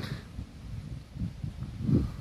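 Uneven low rumble of wind and handling noise on a handheld camera's microphone, swelling a little near the end.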